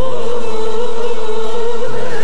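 Turkish art music song in makam Kürdili Hicazkâr: a woman's voice enters and holds one long note with vibrato over the instrumental accompaniment.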